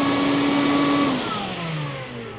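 DeWalt DCV585 60V MAX Flexvolt brushless dust extractor running with a steady whine and rush of air, then switched off about a second in, its motor winding down with a falling pitch.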